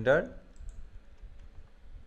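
A few soft keystrokes on a computer keyboard as code is typed and the cursor moved, following the tail of a spoken word.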